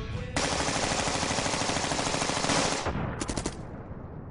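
Rapid automatic gunfire: one long burst starting a moment in and lasting about two and a half seconds, then a shorter burst about three seconds in.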